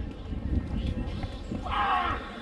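A javelin thrower's short, loud shout as he releases the throw, near the end, over low irregular thuds and rumble from the run-up.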